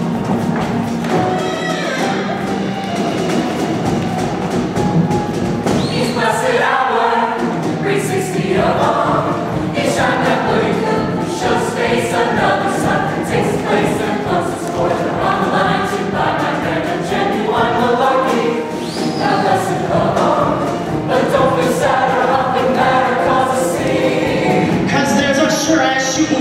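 Show choir singing, many voices together over instrumental accompaniment with recurring percussive hits; the massed voices grow fuller about six seconds in.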